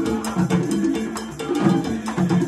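An Afro-Latin percussion ensemble of several conga drums, with cowbell and timbales, playing a steady, driving rhythm of fast hand strokes.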